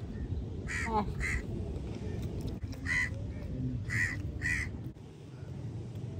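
A bird calling repeatedly: five short, harsh calls in two bunches, over a steady low background rush.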